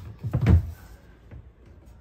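Soft-close overhead cabinet door being flung shut: a sharp click at the start, then a louder dull knock about half a second in as it closes.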